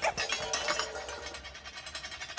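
Glass-shattering sound effect: a rapid tinkle of falling shards that fades away over the two seconds.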